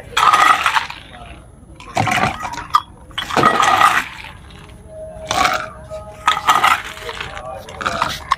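Plastic bags rustling and dishes clinking as food is handled on a table, in several short bursts.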